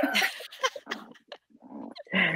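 Women laughing, the laughter dying away into breathy bursts and falling quiet about a second and a half in.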